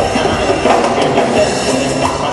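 A live band playing loudly on stage: drum kit, electric guitar and keyboards with a steady percussion rhythm.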